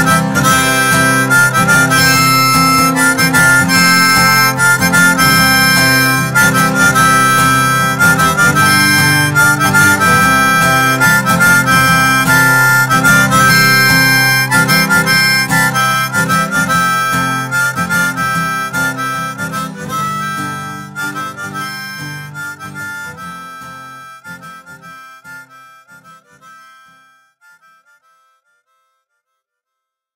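Harmonica playing over the song's instrumental backing, fading out over the second half to silence near the end.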